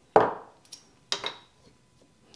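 Two sharp knocks about a second apart, the first the louder: a hard plastic 3D-printed handle form being set down on a wooden workbench.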